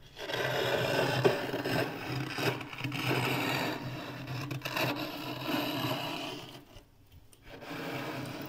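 Thick, flaky freezer frost being scraped, a continuous scratchy scraping sound that stops briefly about seven seconds in and then starts again.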